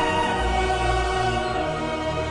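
Symphony orchestra and choir performing, sustained held chords with a low bass line entering about half a second in.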